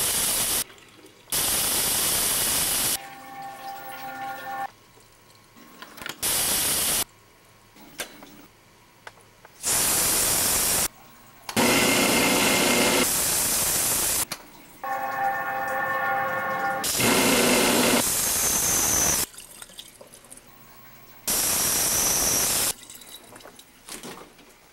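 Bathroom sink faucet water running in bursts of one to three seconds that start and stop abruptly, seven or eight times. Twice, between bursts, a quieter steady hum made of several pitched tones lasts about a second and a half.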